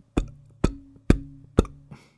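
Handling noise as the pop filter is swung into place on the condenser microphone's scissor boom arm, picked up through the arm: four sharp knocks about half a second apart, with a low ringing tone held between them.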